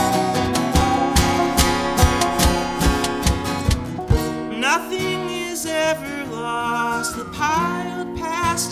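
Acoustic guitar strumming under a bowed musical saw holding a wavering high tone. About four seconds in the strumming stops, leaving sliding, wavering pitched tones that swoop up and down.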